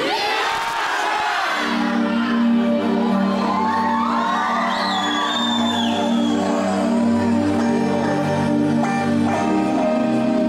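Audience shouting and cheering, then sustained synthesizer chords of a song's intro come in about a second and a half in and hold steady, with whoops and a high gliding whistle over them.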